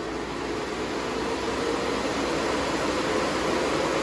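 A bank of six 120 mm computer fans mounted under a car's engine lid, running flat out: a steady whooshing hum of moving air with a faint tone in it, growing slightly louder over the first couple of seconds.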